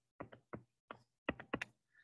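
Pen stylus tapping on a tablet screen while writing by hand: about seven faint, irregular taps.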